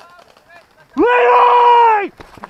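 A man's loud, drawn-out yell starting about a second in, held on one steady high pitch for about a second.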